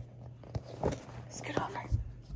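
A picture book being handled and turned to show its page: a few short paper rustles and soft taps of hands on the book, over a low steady hum.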